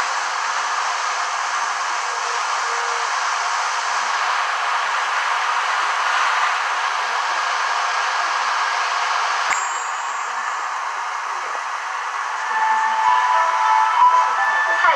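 Steady hiss of static from a badly damaged VHS tape playing through a TV speaker, with one sharp click about two-thirds of the way through. Near the end a few steady tones of the tape's own soundtrack come through the hiss.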